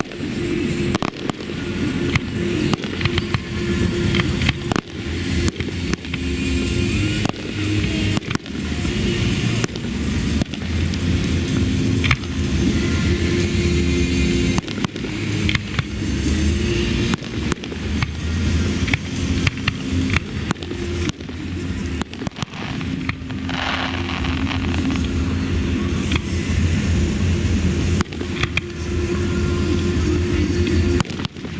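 Fireworks display: aerial shells bursting in a long run of sharp bangs, many in quick succession and some close together, with no pause.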